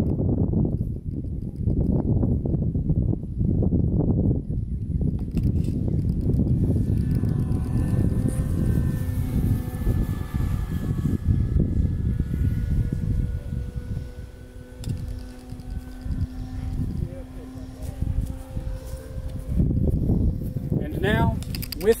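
Wind buffeting the microphone in uneven gusts of low rumble. From several seconds in, a faint steady hum of a few tones sits beneath it, and it stands out more once the gusts ease in the second half.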